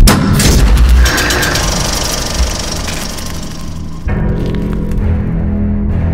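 A sudden loud boom, then the rapid mechanical clatter of a film projector running, with a high hiss over it. About four seconds in, the clatter stops and sustained music tones take over.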